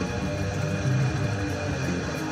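Electric guitar tuned to D standard playing a heavy metal riff, with fast picked low notes and drum hits behind it.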